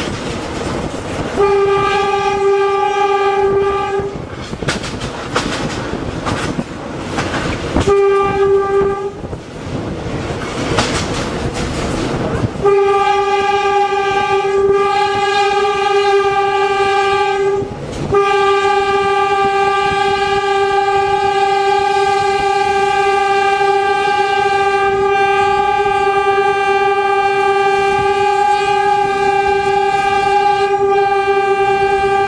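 GE U15C diesel-electric locomotive's horn sounding on one steady note, heard from the cab: a blast of about three seconds, a shorter blast of about one second, then a long blast that is held with only a brief break for the rest of the time. Underneath are the locomotive's engine and the clatter of wheels on rail.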